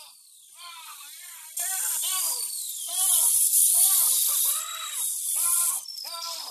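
A man's short, rhythmic cries of "ah" in the dentist's chair, about two a second and louder from about a second and a half in, sounding more pleasured than pained, over the high hiss and whine of a dental drill.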